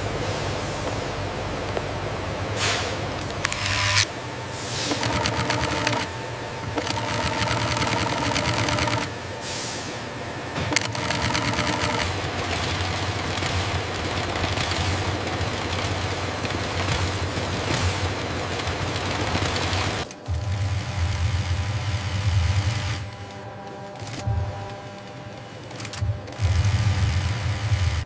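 Busy factory-floor machinery noise, with industrial sewing machines running and light music underneath. The noise is steady but shifts in character every several seconds.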